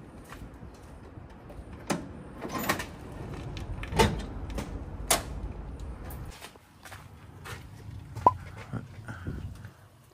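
Several sharp clunks and knocks from the cab of a small Hino Dutro dump truck being opened up to reach the engine, the loudest about four seconds in. A low rumble sits underneath until about six seconds in.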